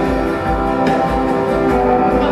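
Live band music: an instrumental passage with no singing, sustained chords over a steady low beat, with a sharp drum hit a little under a second in.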